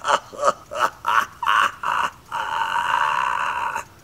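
A man's non-word vocal noises: about six short sounds, each rising quickly, roughly three a second, then one drawn-out sound of about a second and a half that cuts off sharply near the end.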